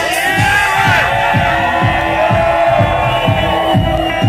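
House music playing loud, with a steady kick drum about two beats a second under sustained high notes, and a club crowd cheering over it.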